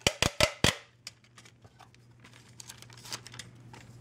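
Clear packing tape pulled off its roll in a hand dispenser in four quick, sharp crackling rips within the first second, followed by faint crinkling of the tape as it is handled.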